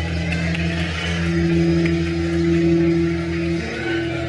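Amplified electric guitars holding a sustained, droning chord over a steady low pulse. The held notes shift shortly before the end.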